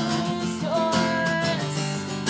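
Acoustic guitar strummed steadily, with a woman's voice holding a long sung note over it.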